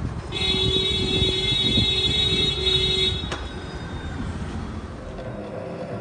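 A steady, alarm-like electronic tone sounds for about three seconds, starting shortly in, over the low rumble of street traffic. A single sharp click follows.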